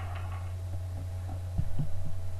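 A steady low electrical-sounding hum with faint higher steady tones above it, and a few dull low thumps close together near the end.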